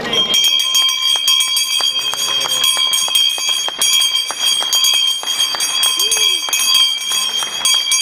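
Brass stock-exchange handbell shaken rapidly and continuously, its clapper striking many times over a steady high ringing, to mark a company's new stock market listing.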